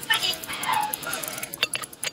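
A running mechanical watch movement ticking quickly and steadily, with a few sharp metallic clicks near the end. A faint whining, voice-like sound runs in the background.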